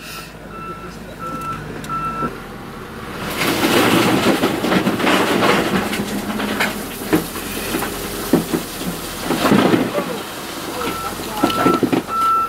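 Crushed limestone pouring from a loader's bucket into a pickup truck bed, heard from inside the cab. From about three seconds in there is a loud, continuous rattling rush of gravel with scattered knocks. Before it, and again near the end, a backup alarm beeps about twice a second.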